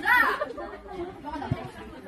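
Chatter of several people's voices in a large hall, one voice louder at the very start, with a short low thump about one and a half seconds in.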